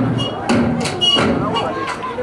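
Live Zulu dance performance: several sharp beats with voices singing and calling over them.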